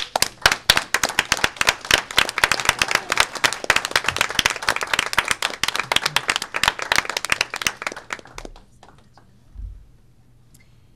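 Applause in a meeting room: a small crowd clapping together, starting suddenly and dying away about eight and a half seconds in.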